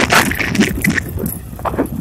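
Swaraj 735 FE tractor's three-cylinder diesel engine running under load as it pulls a tine cultivator through dry soil.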